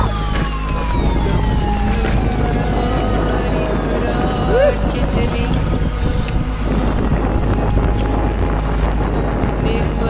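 Wind rushing over a helmet camera's microphone and mountain bike tyres rolling fast over loose rocky gravel on a downhill descent. A long tone falls steadily in pitch over the first few seconds, and a short rising-and-falling call comes near the middle.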